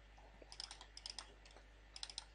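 Faint computer mouse clicks: a few quick clicks about half a second in, a few more around one second, and another short cluster near the end.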